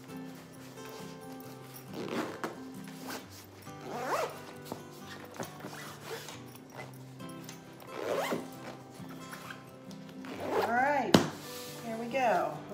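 Zipper on a fabric compression packing cube pulled in several short runs, a few seconds apart, as the cube is zipped shut to compress it. Soft background music with steady notes plays underneath, and a sharp click comes near the end.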